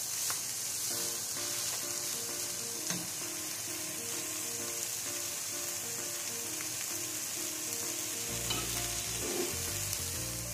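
Fried rice sizzling steadily in a pot on the stove, stirred with a wooden spoon at the start. A simple melody of short notes plays over it from about a second in, with a bass line joining near the end.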